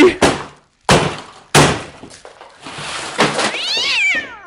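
A baseball bat smashing a crashed RC plane's balsa and foam airframe: a few sharp cracking impacts in the first two seconds, followed by crunching and scattering debris. Near the end a long high cry falls in pitch.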